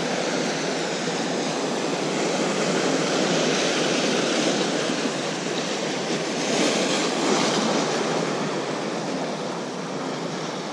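Ocean surf breaking and washing over the rocks of a jetty: a steady rush of water that swells louder about three seconds in and again about seven seconds in.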